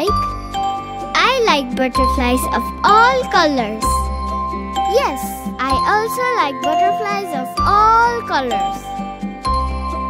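Children's song music: a bright, jingly instrumental backing with a bass note changing about every two seconds, and high, child-like voices singing sliding vocal lines over it.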